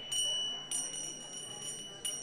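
A small metal bell struck twice, about half a second apart, its high clear tones ringing on between strikes, over a faint murmur of voices. It is rung to call the room back to attention at the end of group discussion.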